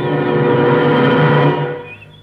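Brass-led orchestral music holding a sustained chord that fades away near the end.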